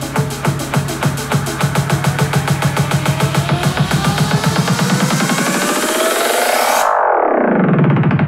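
Electronic dance music played over hi-fi loudspeakers in the room: a steady beat grows quicker and denser into a build-up with a rising sweep. About seven seconds in, the treble cuts out suddenly and a falling sweep leads back into the beat.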